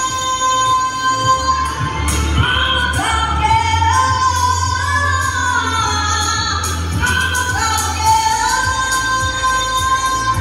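A woman singing live into a microphone over amplified backing music played through a PA system, holding long high notes with slides between them.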